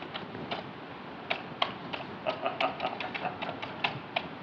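Typing on the MEGA65 prototype's computer keyboard: a run of about fourteen uneven key clicks, coming quicker in the second half.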